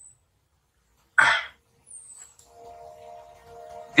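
A single short cough about a second in, then soft background music with held notes fading in during the second half.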